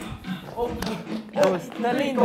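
Excited voices calling out, with a few sharp taps of sneakers on a hard floor as two players scramble around a chair.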